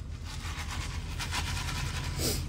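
Steady low rumble of a vehicle heard from inside the cabin, with faint light rustles over it.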